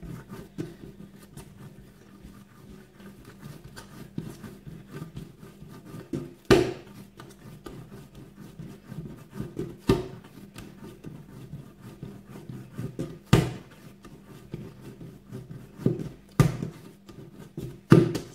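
Hands kneading a soft flour dough on a countertop: steady soft rubbing and pressing, with four thumps about three seconds apart as the dough is pushed down against the counter.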